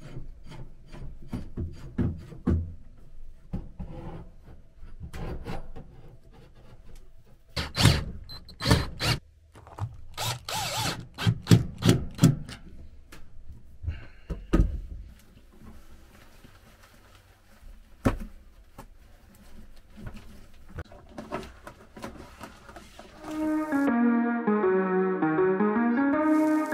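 Black steel pipe shower-curtain rod being handled and seated into its metal flanges: a run of knocks, clicks and scraping, loudest about a third of the way in. Softer rubbing follows as the shower curtain goes onto the rod. Near the end, melodic music starts.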